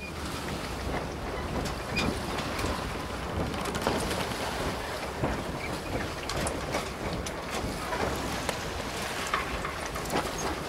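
Steady rushing noise, like wind or surf, with scattered small crackles and clicks, starting just after a stretch of dead silence: an ambient noise bed opening a track rather than music.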